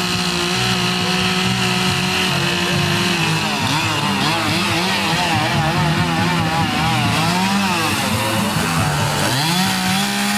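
Two-stroke chainsaw running at high revs with a steady note. From about three and a half seconds in, its pitch wavers up and down, then it rises back to the steady high note near the end.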